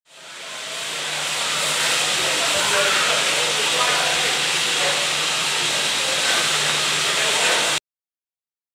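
Steam hissing steadily from LNER A4 Pacific 60019 'Bittern', a loud even rush of escaping steam. It fades in over the first second and cuts off abruptly just before the end.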